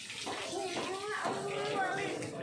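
Water running from a garden hose onto a wet concrete floor, a steady splashing hiss, with people talking over it.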